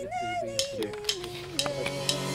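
A woman's voice singing a slow phrase that steps down in pitch, held notes gliding into one another, with a few faint clicks.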